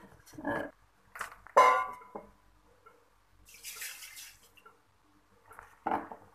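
Thick mango milkshake poured from a blender jar into a glass jar: a few short knocks and clinks of glass on glass, then a brief splashing pour.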